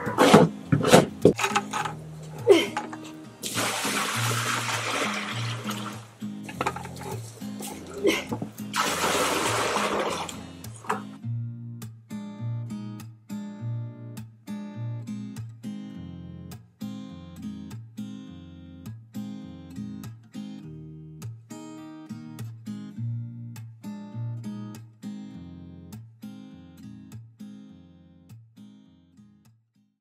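Paint scraper scratching the bottom of a galvanized metal water tank, with water sloshing, in long scraping strokes through the first ten seconds or so. Acoustic guitar music plays underneath and carries on alone for the rest.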